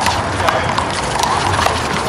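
One-wall handball rally: a few sharp slaps as players hit the big blue rubber ball with open hands and it strikes the wall and court, over background crowd chatter.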